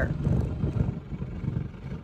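Low, unpitched rustling and bumping close to the microphone as a large dog and a person shift about together in an armchair, easing off toward the end.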